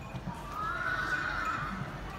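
A horse whinnies once, a call that rises and then falls in pitch over about a second.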